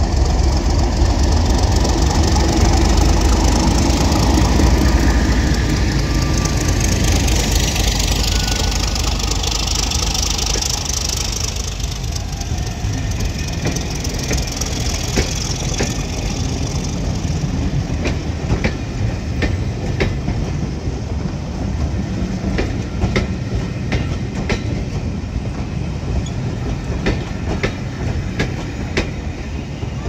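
Diesel train running on the rails: a heavy low rumble that eases off over the first ten seconds or so, then a long run of sharp, irregular clicks and clacks from the wheels on the track.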